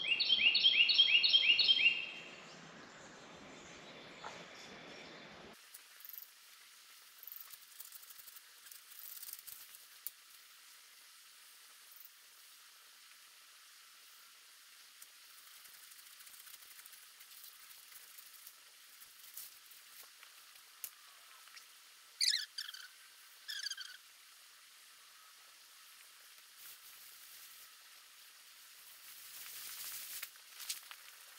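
A songbird singing a quick series of repeated high notes, about four a second, for the first two seconds. The rest is faint outdoor background, with two short gliding bird calls a little past the middle.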